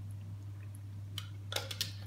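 Quiet steady low hum in a small kitchen, with a few light clicks about one and a half seconds in.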